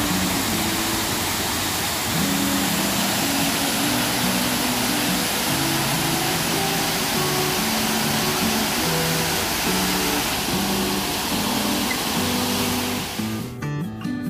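Steady rush of a waterfall tumbling over rocks, under background music with a slow melody. The water noise cuts off sharply near the end, leaving the music alone.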